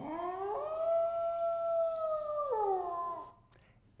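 Recording of a wolf howl: one long howl that rises in pitch, holds steady for about two seconds, then drops and fades out before the end.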